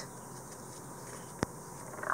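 Faint room tone with one short, sharp click about a second and a half in. The click is the polymer clay pendant knocking against the metal can bottom as it is lifted out.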